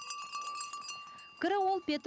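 A small metal bell jingling, with a steady ringing tone and quick repeated strikes. Near the end a short voiced sound cuts in.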